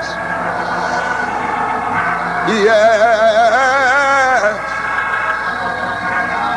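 A voice singing a long phrase with strong vibrato about two and a half seconds in, over held instrumental chords that carry on through the pauses, on an old tape recording of a church service.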